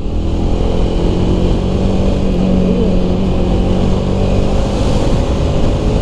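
Jawa 300's single-cylinder engine running at a steady pace while the motorcycle is ridden along the road, with a continuous rush of road and wind noise.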